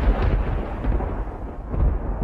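Thunder sound effect: a continuous deep rumble with crackle, growing steadily duller.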